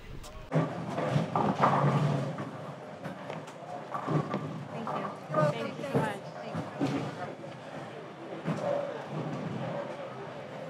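Indistinct voices and background chatter, with scattered short knocks.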